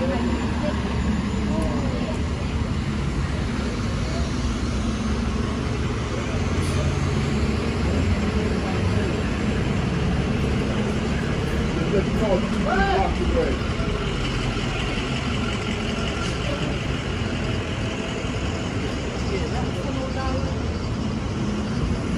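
Downtown street traffic: a steady low engine rumble from buses and cars, with brief voices of passers-by about halfway through.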